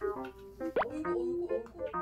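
Playful keyboard background music with a comic sound effect: a single quick upward-sweeping plop a little under a second in.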